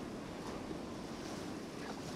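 Shallow surf washing in over the sand: a steady, even hiss, with some wind rumbling on the microphone.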